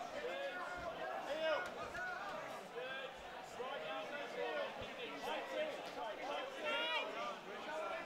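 Several voices of the watching crowd calling out over one another, with no single voice carrying through.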